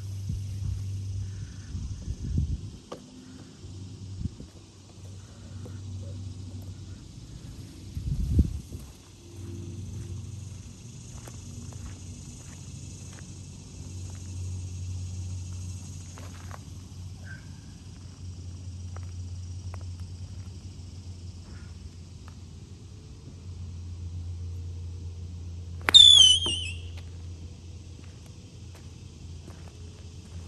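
Three hybrid striking a golf ball once late on: one sharp crack with a brief ringing tail, the ball caught off the heel of the club. A steady low hum runs underneath.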